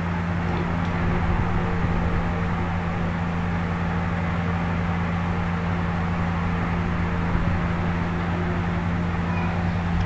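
Steady low hum with hiss underneath, the background noise of the recording, with no distinct sounds.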